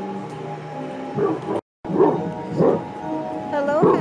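A dog barking a few times and whimpering, with a rising whine near the end, over background music. The sound drops out completely for a moment about a second and a half in.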